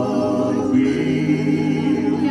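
A slow ballad sung with sustained, choir-like vocal harmony over a backing track; the chord changes about three-quarters of a second in.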